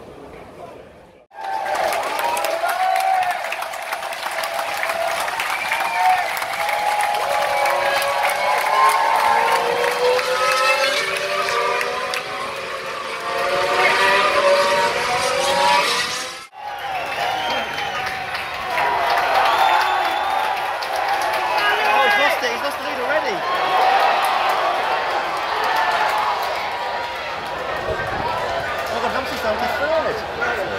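Formula One cars' 1.6-litre turbocharged V6 engines coming past in a group, several engine notes overlapping and sliding down in pitch as they go by. The sound breaks off briefly about a second in and again about halfway through.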